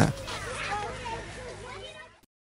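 Background chatter of many children's voices from a group walking together, faint and fading out near the end.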